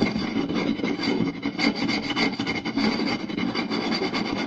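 Fingers rapidly scratching and rubbing across the surface of a round wooden plate, a dense run of fine strokes.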